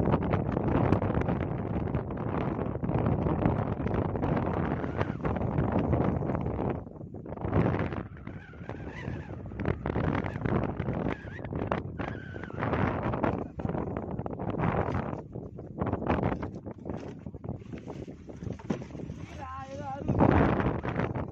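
Wind buffeting the microphone on a small open boat at sea, heavy and steady for the first seven seconds, then coming in gusts.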